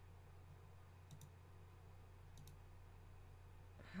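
Near silence with a low steady hum and a few faint computer mouse clicks, a little over a second apart, as display settings are clicked through.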